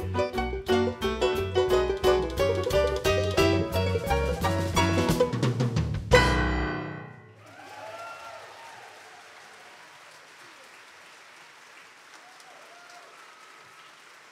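Banjo, piano, electric guitar, fiddle and drum kit playing the last bars of a lively tune, ending about six seconds in on a loud final hit that rings out and fades. Audience applause follows and carries on to the end.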